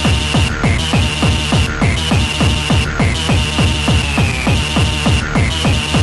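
Fast hardcore gabber dance music. A kick drum comes in at the start and runs at about three beats a second, each beat falling in pitch, with a high held synth tone over it that cuts out briefly now and then.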